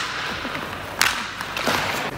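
A single sharp crack of a hockey stick striking a puck about a second in, with a short ring after it, then a scraping hiss near the end.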